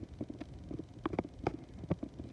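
K'NEX model ride turning on its small electric K'NEX motor: a low hum under irregular light clicks and taps from the plastic rods, connectors and gears, about ten in two seconds.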